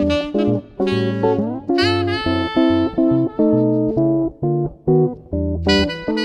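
Jazz duet of a seven-string archtop guitar and a tenor saxophone playing together, the guitar putting low bass notes under the melody. About two seconds in, a note slides up and is held.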